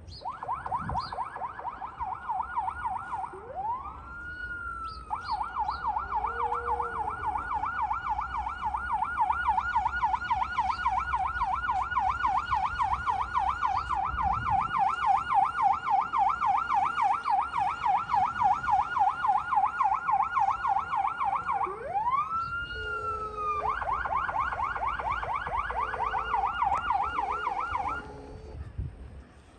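Ambulance's electronic siren in a rapid yelp, its pitch sweeping quickly up and down over and over. Twice it breaks into one slower rising-and-falling wail before the yelp resumes.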